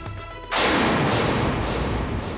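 A dramatic sound-effect sting in the background score: a sudden loud crash-like hit about half a second in that dies away slowly.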